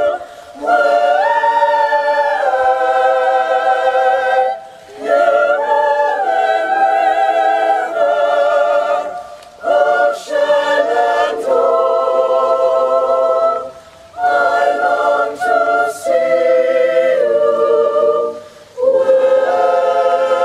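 A choir singing unaccompanied in slow, held chords, phrase by phrase, with a short breath-break every four to five seconds.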